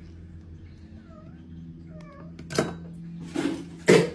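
Two short, faint cat meows about one and two seconds in, followed by three short noisy bursts, the last and loudest right at the end.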